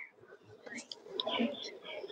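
Faint whispered voice, murmuring softly about half a second in.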